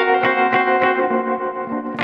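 Solo guitar picking a repeating figure, about three notes a second, over ringing chord tones. The picking stops about a second in and the chord rings on, fading.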